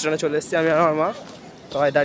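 A man's voice talking close to the microphone, with one long drawn-out vowel about halfway through the first second.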